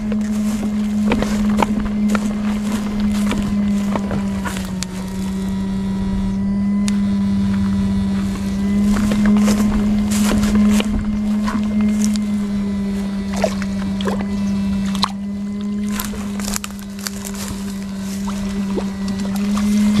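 Electronic backpack electrofishing unit buzzing with a steady low hum while its pole electrodes are swept through ditch water, with scattered sharp clicks throughout.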